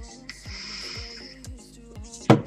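Background music with a steady beat, and over it about a second of hissing as a man draws on an electronic cigarette.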